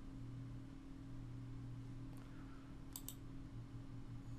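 Faint computer mouse clicks over a low steady hum: one soft click about two seconds in, then two quick sharp clicks about three seconds in.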